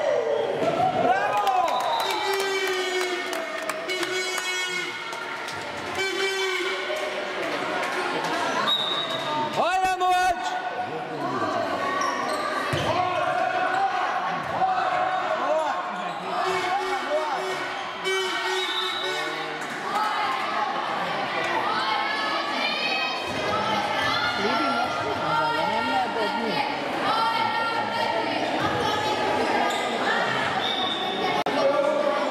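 A handball being bounced and thrown on a sports-hall floor, with sharp ball impacts, one loud one about ten seconds in. Young players' shouts and calls run throughout, echoing in the hall.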